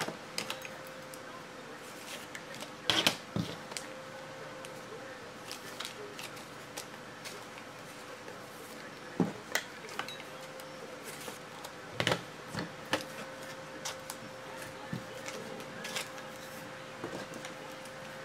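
Plastic top-loader card holders handled and set down on a table: a scattering of sharp clicks and taps, the loudest about 3, 9 and 12 seconds in, over a faint steady hum.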